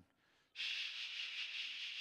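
A man making a long, steady "shhh" hiss with his mouth to imitate falling rain. It starts about half a second in.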